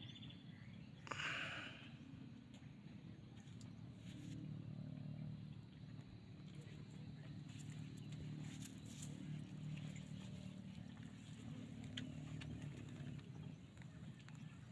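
Faint, steady low hum of a small boat's motor as the boat travels over calm water, with a brief rush of noise about a second in.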